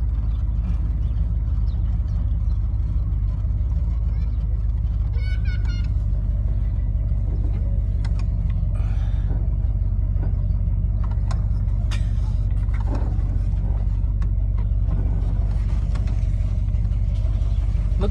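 A 1972 Dodge Charger's engine running steadily, heard from inside the cabin as a loud, even low rumble with no revving.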